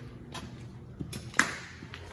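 Footsteps and light scuffs on a gritty, debris-strewn floor, with one sharp knock a little past halfway that rings briefly in the empty room.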